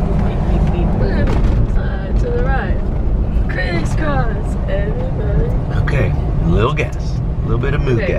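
Steady low rumble of engine and tyres heard inside a moving vehicle's cabin, with a person's voice talking or singing over it for most of the time.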